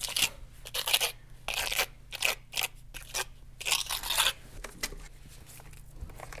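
Wet hydraulic cement being forced into a hole in a concrete wall with a steel trowel: a quick run of short, gritty scraping and squishing strokes that die away after about four seconds.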